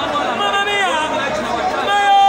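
Football fans in the stands, many voices calling and talking over one another in a steady babble.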